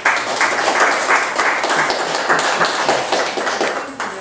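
Audience applauding, many hands clapping at once, fading near the end.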